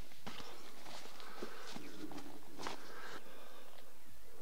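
Footsteps and rustling in dry grass and brush, with a few sharp snaps or clicks.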